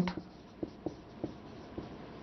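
Marker pen writing on a whiteboard: a few faint, short strokes and taps at irregular intervals.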